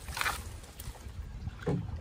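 Leafy shrub branches brushing and rustling against the canoe and camera as it pushes through them, with a short sharp swish just after the start. Low wind rumble on the microphone underneath.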